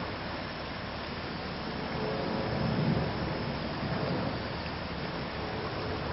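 Shallow, muddy runoff stream rushing over rocks, a steady noise that swells a little about two to three seconds in.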